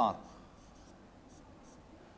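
Faint scratching of a marker pen, a few short light strokes, after the last word of a sentence at the start.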